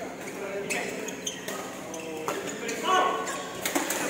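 Indistinct voices talking in a badminton hall, with several sharp clicks of rackets striking shuttlecocks on nearby courts.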